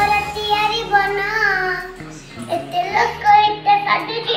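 A child singing a song in a high voice, holding long notes with a slight waver, with a short break about two seconds in.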